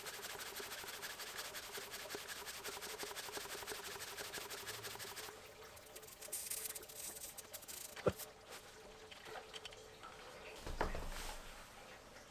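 Lezyne hand pump inflating a motorcycle tyre through its valve: a fast, even run of pump strokes for about five seconds, then quieter, with a single click and a soft thud near the end.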